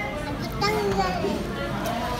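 Indistinct background voices, including a child's voice, over the steady noise of a busy dining room.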